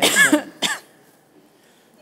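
A person coughing: two short coughs in the first second, the first the louder, then quiet studio room tone.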